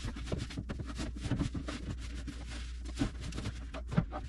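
Cloth rubbing and scrubbing the plastic tray of a Lazy Susan, a quick run of scratchy wiping strokes.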